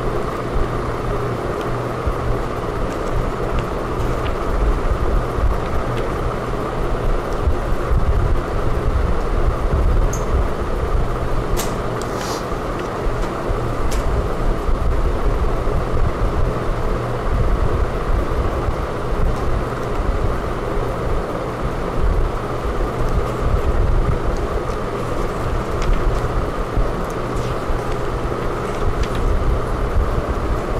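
Steady low background rumble and hum with no speech, and a few faint clicks about twelve seconds in.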